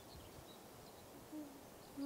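Faint woodland ambience: a few faint, short, high bird chirps, then a short low hoot about one and a half seconds in, over a steady low hiss.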